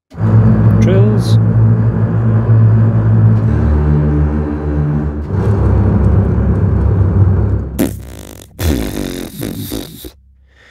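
Cinematic Studio Strings sampled double-bass section playing low bowed trills, the notes shifting about three and a half and five and a half seconds in. A loud burst of hiss-like noise comes near the end.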